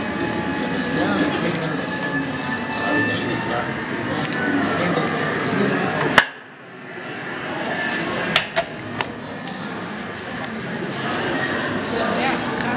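Hand-cranked lithographic press being worked while visitors chatter in the background. There is a sharp click about six seconds in, followed by a sudden drop in level, and several lighter clicks a couple of seconds later.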